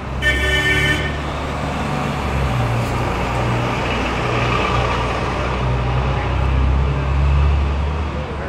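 A car horn toots briefly in the first second, over the steady low rumble of city street traffic, which swells near the end.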